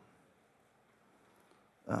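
Near silence: room tone in a pause, ending with a man starting to say 'um' right at the end.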